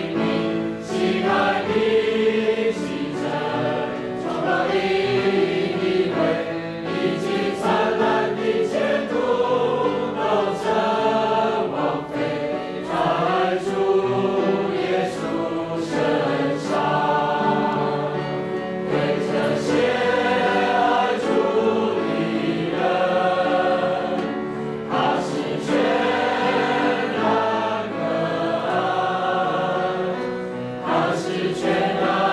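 A congregation of men and women singing a hymn together, led by two men singing at the front.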